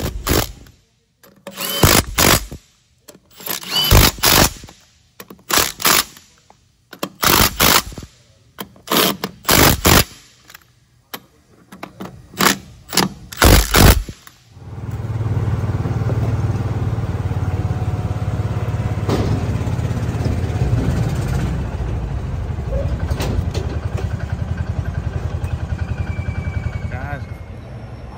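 A Milwaukee Fuel cordless impact wrench runs in about a dozen short bursts, driving lug nuts onto a wheel. Then an engine runs steadily and evenly for about twelve seconds.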